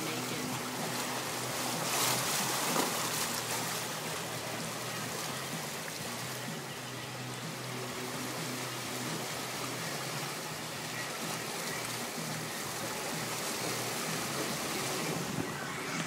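Steady rush and wash of floodwater around a vehicle driving through a flooded street, heard from inside the cab, with a louder surge of splashing between about two and four seconds in.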